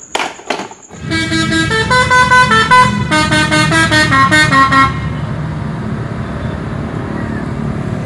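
Indonesian tour bus's musical 'telolet' air horn playing a quick tune of stepped notes for about four seconds, then a steady rumble of the bus running, with the horn tune starting again at the very end. Two short knocks come in the first second.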